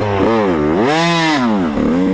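Dirt bike engine revving through the throttle. The pitch dips, climbs to a peak about a second in, then falls away again.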